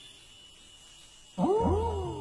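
A tiger snarls suddenly about one and a half seconds in, after a quiet start. It is a loud, throaty call that sweeps up and then down in pitch.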